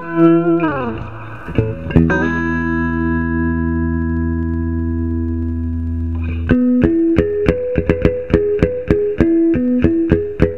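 Electric guitar, a 1962 Fender Stratocaster played through an overdrive pedal into a 1974 Fender Pro Reverb amp: a note slides down in pitch, then a chord is struck and left ringing for about four seconds, then quick picked notes move back and forth between a few pitches.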